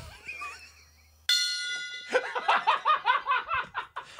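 A small tabletop brass gong struck once with a mallet about a second in, giving a bright metallic ring that fades over about a second. Laughter follows in quick, choppy bursts.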